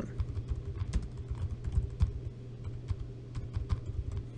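Typing on a computer keyboard: a quick, irregular run of key clicks as a two-word name is typed in.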